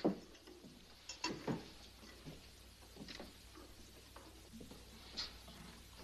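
Faint clicks and knocks as footprint prints are handled and changed in a projector, over the steady low hum and hiss of an old film soundtrack.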